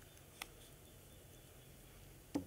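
Near silence, with a single faint, short click about half a second in from a small plastic paint pot being handled.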